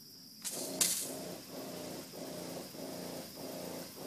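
A 15-gallon sprayer's pump and hand wand starting to spray: a brief burst of hiss as the spray opens, then a rough pump hum that pulses about twice a second.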